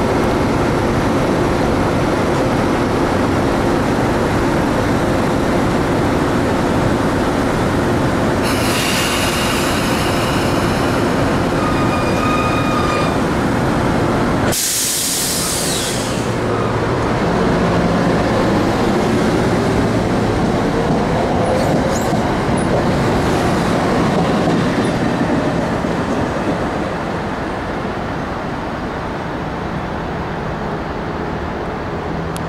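Metro-North electric commuter train running close by, with steady rumble and motor hum. High-pitched wheel squeal comes in around the middle, ending in a sharp screech. A rising whine follows, and the sound fades near the end.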